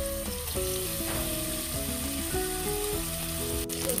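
Chicken pieces and onions sizzling as they fry in oil in a pot, under background music with a plain melody.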